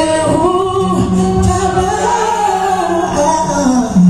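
A woman singing a slow gospel song to her own acoustic guitar, with long held notes.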